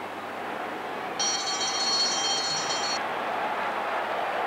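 Bell rung to signal the last lap of a mile race: a high, steady ringing that starts about a second in and stops about two seconds later, over a steady crowd noise.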